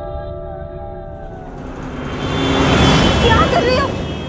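Gong-like struck tones from the film score ring on and fade over the first second and a half. Then a rushing noise swells to a peak about three seconds in and dies away, with a voice calling out over it near the end.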